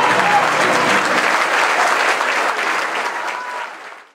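Audience applauding at the end of a sung jota, the last of the singer's note and the plucked-string accompaniment dying away in the first half second. The applause fades out near the end.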